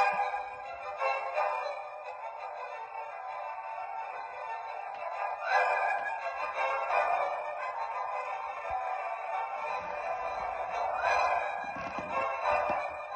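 A Christmas music track playing from the 2021 Occasions light-show Christmas tree's small built-in speaker. It sounds thin and tinny, with almost no bass.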